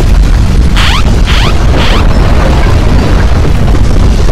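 Loud, continuous deep rumbling of strong earthquake shaking. In the first two seconds an earthquake early-warning alarm sounds over it as three quick bursts of rising tones, about half a second apart.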